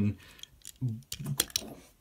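A few light clicks and clacks of toy trains and Lego pieces being handled on a tabletop, with a short murmur of voice in between.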